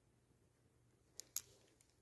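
Near silence with faint room tone, broken a little over a second in by two short faint clicks, like handling of the phone or paper.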